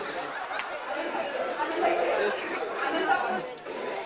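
Several voices talking over one another, with the ring of a large hall: actors' dialogue on a theatre stage.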